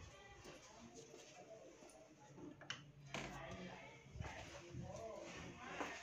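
Faint, indistinct speech in the background, with a few light clicks.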